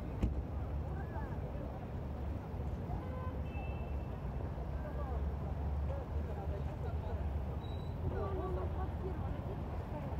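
Outdoor street ambience: a steady low rumble with scattered, indistinct voices of people around.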